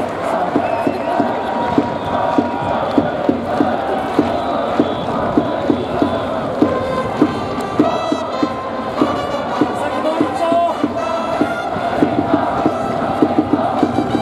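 Baseball cheering section in the stands during an at-bat: a crowd chanting a batter's cheer song in unison over a steady drum beat, about two to three beats a second, with trumpets playing the tune.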